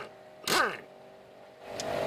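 Air impact wrench on a wheel lug nut: a short burst of running about half a second in, its pitch falling as it spins down.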